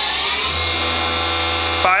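CNC machining center spindle, a 35 HP Cat 40 spindle, whining as it steps up from 4,000 RPM: the pitch rises for about half a second, then holds steady with a low hum under it.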